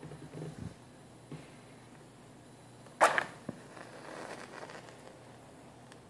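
A wooden match struck on the side of a cardboard matchbox: a few soft handling sounds, then about three seconds in one sharp scrape as the head catches, followed by the soft hiss of the flame flaring for a second or so.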